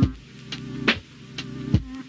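Lo-fi hip-hop music: a slow drum beat with a hit about every half second over sustained, slightly wavering keys and bass.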